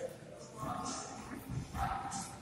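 Boxers sparring: short sharp hissing bursts, like breath pushed out with punches, and a couple of brief voiced grunts or calls, one about halfway through and one near the end.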